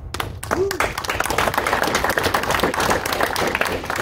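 Audience applauding: a few scattered claps at first, then steady clapping from many hands.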